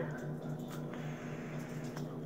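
A long drag on a single-coil vape mod: faint air drawn through the atomizer with light crackling of the wet coil. A steady low hum runs underneath.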